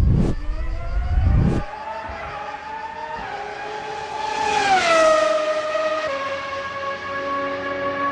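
Race car engine passing by: its pitch climbs slowly, then drops as it goes past about five seconds in, and settles on a steady lower note. A deep rumble fills the first second and a half.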